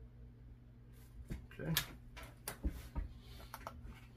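A few light clicks and dull knocks from handling things on a workbench, mostly in the second half, over a steady low hum.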